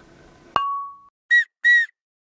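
A sharp click with a brief ringing ping, followed by two short whistle notes at the same higher pitch, each rising and falling slightly.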